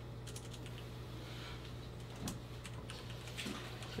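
Typing on a computer keyboard: scattered light keystrokes in small clusters, over a steady low hum.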